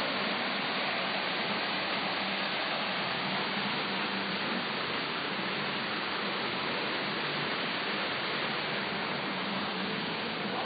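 Artificial waterfall spilling over rockwork: a steady rush of falling water that grows slightly fainter in the second half.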